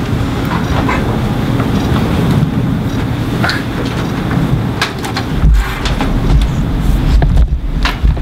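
Handling noise from a handheld microphone being passed over and gripped: a loud low rumble with scattered knocks and clicks, heaviest in the second half.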